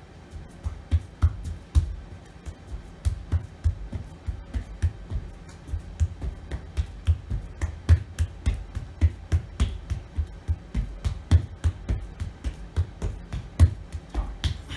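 Rapid, fairly regular slaps of bare hands on a rubber gym floor and hand-on-hand touches, about three to four a second, from someone in a push-up position alternately reaching one hand across to tap the other.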